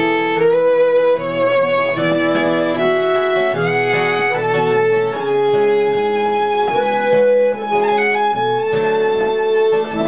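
Instrumental break of an Irish folk song: fiddle and button accordion playing the melody together over acoustic guitar accompaniment.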